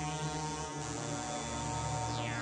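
Electronic synthesizer music: a dense, steady drone of many sustained tones, with the low note shifting about a second in.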